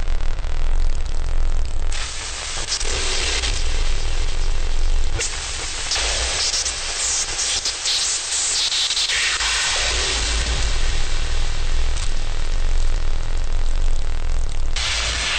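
Electronic music made of noise: a static-like hiss over a steady deep bass drone. The hiss swells in about two seconds in, is strongest in the middle and fades back near the end.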